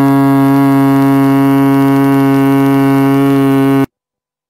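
A single loud note held at one unwavering pitch, rich in overtones, that cuts off abruptly near the end into silence.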